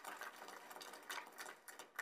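A small audience applauding: a dense patter of hand claps that thins out near the end.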